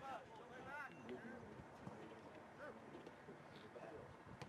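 Faint, distant voices of players and spectators calling out, with short shouts mostly in the first second over a low background hiss.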